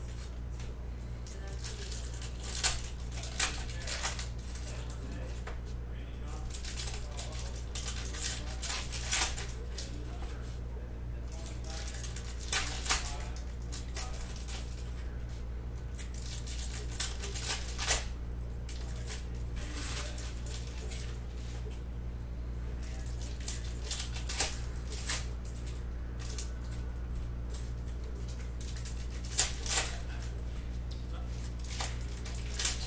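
Foil wrappers of Panini Donruss Optic basketball card packs being torn open and crinkled by hand, with the cards handled and flicked through. Short crinkles and snaps come in clusters every few seconds over a steady low hum.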